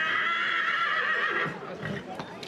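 A horse whinnying: one loud, high call that stops abruptly about a second and a half in.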